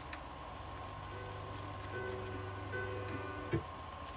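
A faint sample on an Akai S2000 sampler playing back as pitched, sustained tones, coming in about a second in and cutting off with a click near the end, while its envelope is being edited. Under it are a steady low hum and light ticking.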